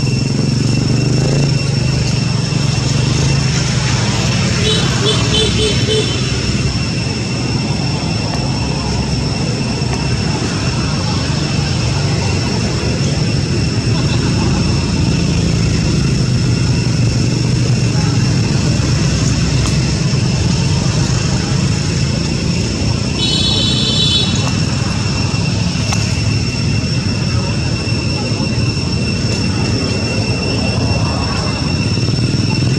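Steady outdoor background noise: a low rumble with two constant high-pitched tones over it, and two brief bursts of rapid chirping, one about five seconds in and one near the three-quarter mark.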